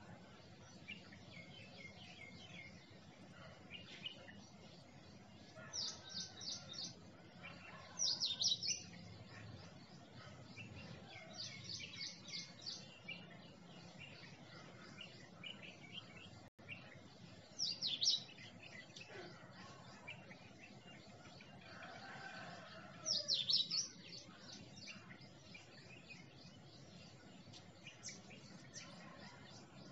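Birds chirping in bursts of quick, high, repeated notes every few seconds over faint background noise, with the sound cutting out for an instant about halfway through.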